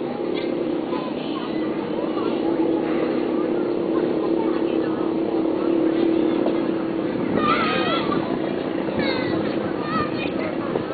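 Background voices of a small group of people talking, over a steady low hum. Higher, sharply rising and falling voices come in about seven and a half seconds in and again near the end.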